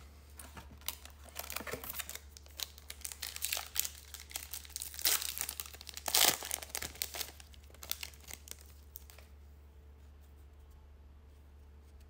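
Foil wrapper of a Topps Gallery trading-card pack being torn open and crinkled by hand, a dense crackling that is loudest around the middle and dies away after about nine seconds.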